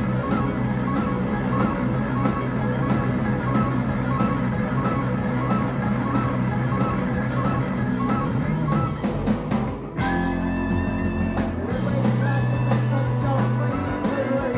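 Live rock band playing instrumentally, with electric guitars, keyboard, saxophone and drum kit. The music drops out abruptly just before ten seconds in and comes straight back in a new section.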